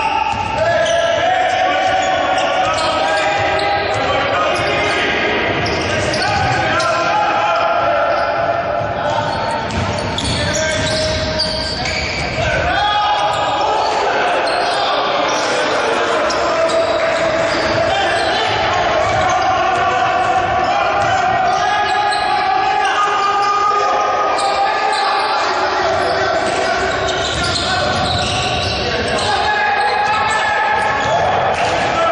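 A basketball being dribbled on a hardwood court, knocking again and again, over indistinct raised voices of players and coaches. The sound echoes around a large hall.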